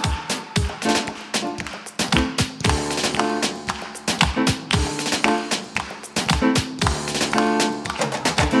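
Live worship band playing an instrumental passage between sung lines: keyboard chords over a steady, quick percussive beat, with hands clapping along.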